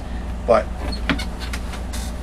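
A man says a single word, then pauses over a steady low hum with a couple of faint clicks.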